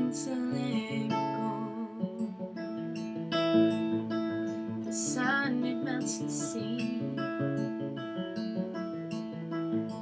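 Acoustic guitar playing the song's accompaniment, with a female voice singing a short phrase about halfway through.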